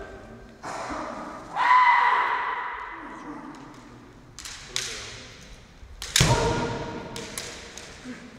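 Kendo kiai shouts ringing through a large hall, with sharp impacts from the match: quick clacks and, about six seconds in, a heavy stamp on the wooden floor followed by another shout.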